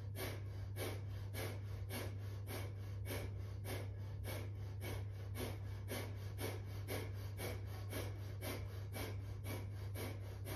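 Breath of fire: rapid, forceful exhalations through the nose, quick and hard, about three a second, each driven by snapping the belly button toward the spine. A steady low hum runs underneath.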